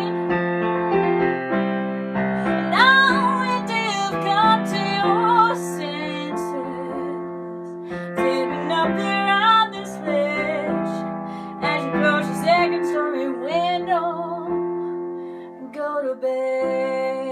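A woman singing with vibrato, accompanying herself on a keyboard piano with sustained chords.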